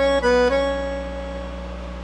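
Roland V-Accordion, a digital accordion, playing two quick notes on the treble keys and then holding the phrase's closing note, which slowly fades away.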